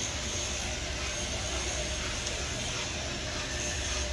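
Steady machine noise: a low rumble under an even hiss, unbroken throughout.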